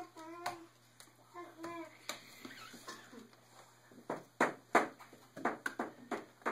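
Two short, high vocal sounds near the start, then several sharp taps and slaps in the second half as playing cards are handled on the tabletop.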